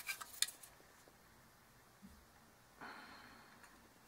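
A few faint, light clicks and taps of small metal tools being handled on a wooden bench in the first half second. Then it goes quiet, with a soft, brief hiss near the end.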